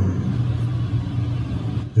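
A steady low hum fills a pause between spoken phrases.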